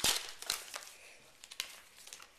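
Football card pack wrapper being torn open and crinkled by hand. A loud tear right at the start and another about half a second in, then softer crinkling and crackles.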